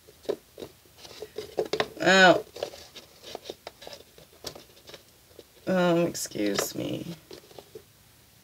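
Light clicks and small scrapes of cardboard oracle cards being handled and set upright on a table, with a woman's brief wordless vocal sounds about two seconds in and again around six seconds.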